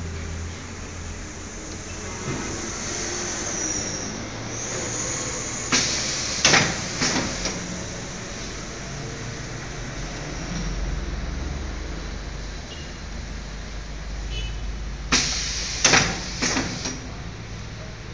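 Semi-automatic cellophane overwrapping machine running with a steady low hum, with two bursts of sharp mechanical clacks about ten seconds apart, three or four clacks each, as it cycles on a hand-fed box.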